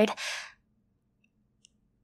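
A woman's short breathy sigh lasting about half a second, followed by near silence with one faint click.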